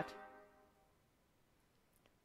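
The tail of a synthesized trumpet playback note from music notation software dying away in the first half second, then near silence.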